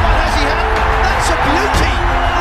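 Dramatic cinematic trailer-style background music with long held notes, laid over a dense, steady noise from the cricket broadcast.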